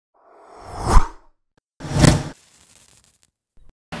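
Edited sound-effect whooshes for an animated transition. A swelling whoosh builds to a sharp peak about a second in and stops, then a second, shorter whoosh with a heavy low end comes about two seconds in and trails away.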